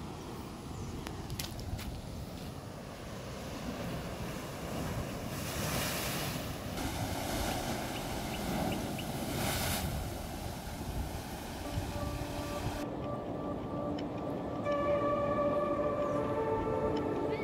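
Sea waves surging into a narrow rock gully, a steady rushing wash that swells loudest in the middle, with some wind on the microphone. Music comes in near the end.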